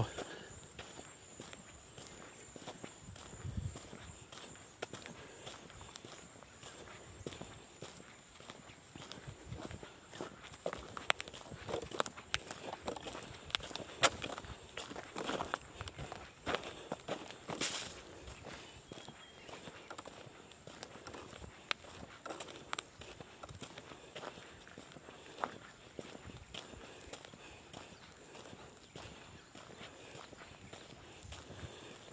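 Footsteps of a person walking along a dirt road: irregular soft footfalls and scuffs at walking pace.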